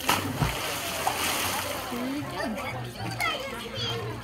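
A sudden splash of water that dies away over about two seconds, with children's voices in the background.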